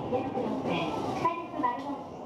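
A voice speaking over the steady running sound of an E233-7000 series electric train, heard from inside the front car.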